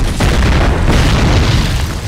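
A large explosion in a film battle mix: a sudden loud blast, then a heavy low rumble with debris that holds for most of two seconds and eases off near the end.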